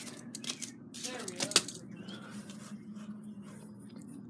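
A few sharp clicks and taps, the loudest about one and a half seconds in, over a low steady hum, with a brief faint voice about a second in.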